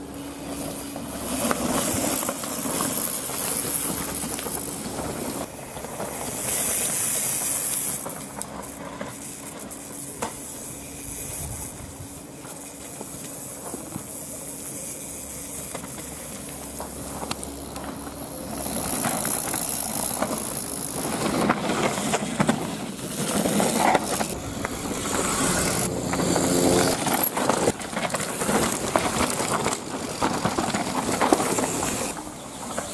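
Mountain bikes coming down a rocky gravel trail: tyres crunching and skidding over loose stones, with knocks and rattles from the bikes, louder over the last ten seconds or so.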